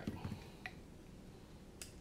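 Faint handling clicks on a workbench: a screwdriver being set down on a silicone mat and the parts of an opened radio transmitter being touched, with two light clicks about a second apart.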